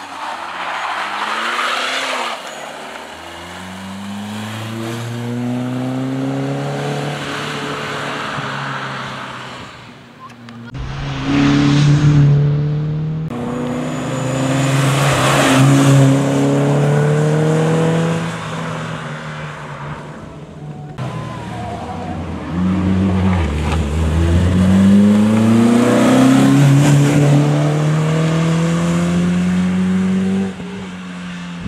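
Peugeot 205 four-cylinder rally car engine revving hard as it climbs through the gears and drives past, in several runs. The pitch rises in each gear and drops back at each change.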